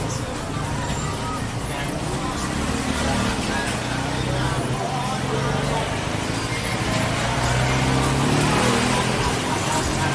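Busy city street ambience: road traffic running steadily, mixed with indistinct voices of people nearby.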